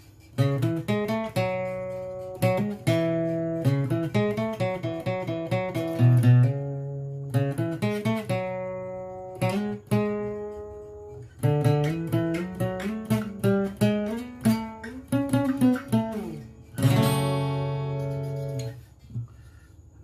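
Yamaha APX 500 II acoustic-electric guitar, capoed, played unaccompanied: a song intro picked as single notes and chords, breaking off briefly twice, then a full strummed chord about seventeen seconds in that is left to ring.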